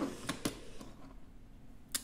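Small die-cast Majorette toy cars being set down on a cutting mat, giving a few light clicks early on and one sharper click near the end.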